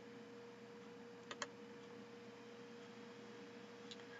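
Near silence with a faint steady hum, broken about a third of the way in by two quick faint computer-mouse clicks.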